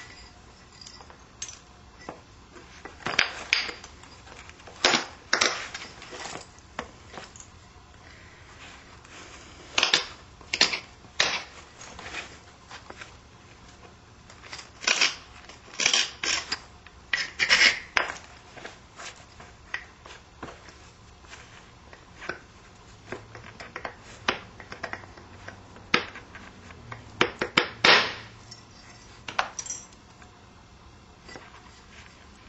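Flintknapping with an ivory punch on a large stone Clovis point: irregular sharp clicks and knocks as the punch works the edge and flakes come off, some in quick clusters, with quiet pauses between.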